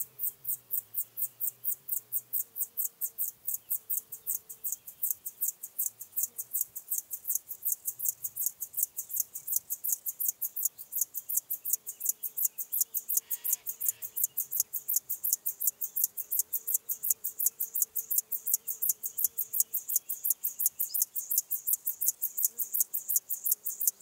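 Male Chorthippus apricarius (locomotive grasshopper) stridulating, rubbing its hind legs against its wings. The song is a long unbroken series of short, even, high-pitched rasping pulses, about four or five a second, growing slowly louder.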